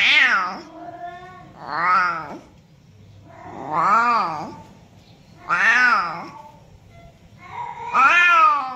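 A domestic cat meowing loudly and repeatedly, about one meow every two seconds, each call rising and then falling in pitch. There are four full meows, and a fifth begins at the very end.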